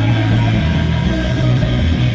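Punk rock band playing live at full volume: electric guitars and drums, with no singing at this moment.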